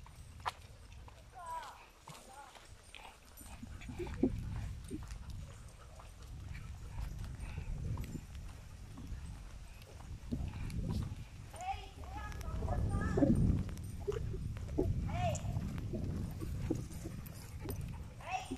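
Footfalls of people and a pack of dogs walking on a paved road, with a low rumble of movement and a few brief high-pitched calls now and then.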